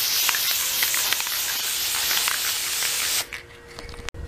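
Aerosol spray paint can spraying in one steady hiss that stops about three seconds in.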